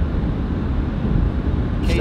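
Steady low road and engine noise heard inside the cabin of a moving car.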